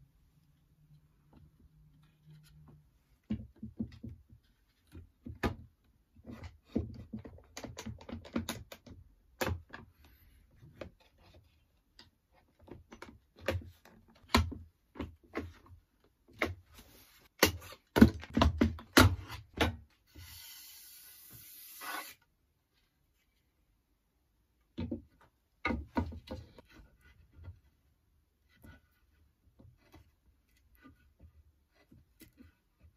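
Wood and plastic bar clamps being set and tightened along a glued-up wooden rail: scattered knocks and clicks, densest about two-thirds of the way through. A short steady hiss follows the busiest stretch, and a few more knocks come near the end.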